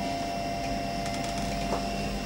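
Steady hum of electronic equipment: a few held tones over a faint hiss, with a couple of faint clicks about a second in.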